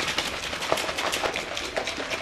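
Plastic containers handled close to the microphone: a dense, irregular run of clicks, taps and rustles.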